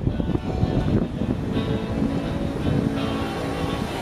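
Live band music playing inside the bandstand, under a steady low rumble; held notes come in about one and a half seconds in.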